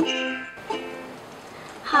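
Ukulele music stops about half a second in, then a single soft ukulele note or chord rings and slowly fades. A child's voice starts just before the end.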